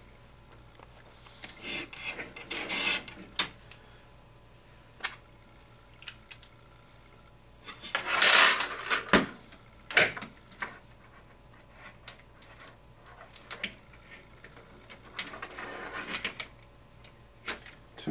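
Hands handling and fitting HPI Baja SS suspension parts, a hub carrier being worked onto the front A-arms: scattered clicks, knocks and rubbing of parts against each other. The loudest is a short rustling scrape about eight seconds in.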